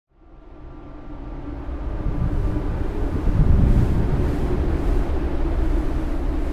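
Steady low industrial rumble with a faint hum, fading in from silence over the first two seconds: factory ambience.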